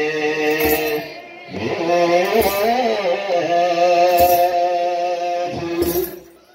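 A children's choir sings Ethiopian Orthodox wereb chant in long, held notes, with a short break about a second in. A short percussive stroke falls roughly every two seconds.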